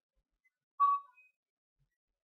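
Silence broken once, about a second in, by a short high-pitched whistle-like tone that fades within a third of a second.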